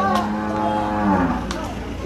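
A zebu cow mooing once: one long call of about a second and a half, steady in pitch, then sinking as it dies away.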